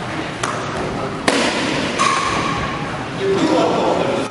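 A kick striking a handheld kicking paddle, one sharp smack about a second in, over background chatter.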